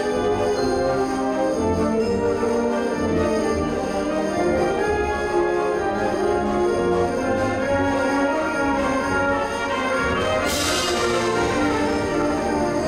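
High school symphonic band playing, brass and woodwinds holding sustained chords, with a bright crash near the end that rings away over about a second.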